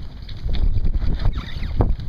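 Wind buffeting the microphone on an open boat deck, a loud, rough low rumble, over the noise of the boat moving through choppy sea.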